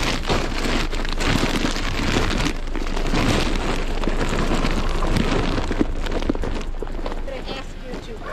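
Continuous rustling and crinkling of grocery bags being carried close to the microphone.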